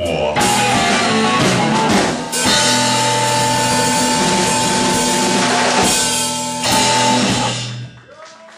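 A live blues-rock band of electric guitar, bass and drum kit playing an instrumental passage, with a held chord and cymbal wash from about two and a half seconds in. The music dies away just before the end.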